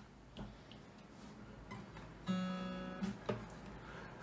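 Faint knocks and handling noise from a nylon-string classical guitar, tuned DADGAD two whole steps down, as it is settled into playing position. About two seconds in, the strings are sounded once and ring for about a second before fading.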